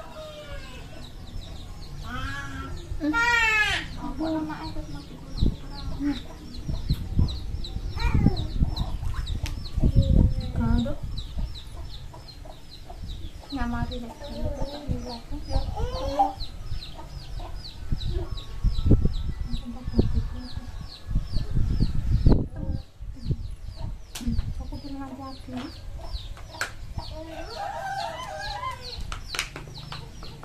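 Domestic chickens clucking on and off, with a rooster crowing about three seconds in. Behind them a high chirp repeats steadily, about three times a second.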